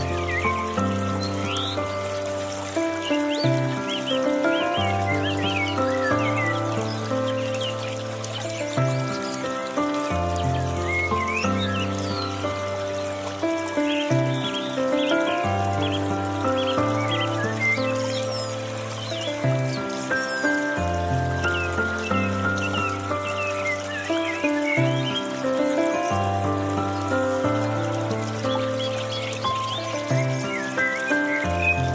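Slow, gentle piano music, its held chords moving over a bass note that changes every one to two seconds, with bird chirps and trickling water from a bamboo fountain underneath.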